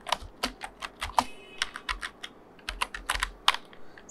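Computer keyboard being typed on: a quick, irregular run of key clicks, a short pause about two seconds in, then another run of clicks.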